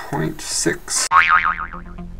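A cartoon "boing" sound effect marking a mistake: a wobbling tone that falls in pitch over about a second, coming in suddenly about a second in, with low background music starting under it.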